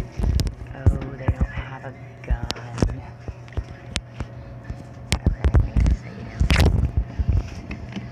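Handling clatter of a shopping cart and goods at a store checkout: a run of sharp clicks and knocks, with a louder rustling thump about six and a half seconds in, over a steady low hum.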